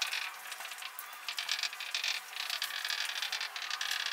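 Whiteboard marker writing numbers on a whiteboard: a run of short scratchy strokes with brief pauses between them.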